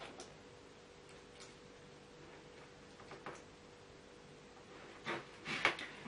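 Quiet handling: a few faint, irregular clicks of a multimeter probe tip and a plastic plug being handled, over a low steady hum, with a couple of louder clicks near the end.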